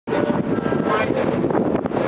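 Steady noise aboard a moving boat: the boat's engine running, with wind on the microphone.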